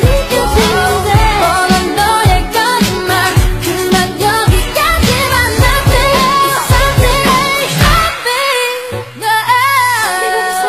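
Asian pop song with a singing voice over a steady beat of about two bass-drum thumps a second; the beat drops out about eight seconds in, leaving the voice over sustained tones.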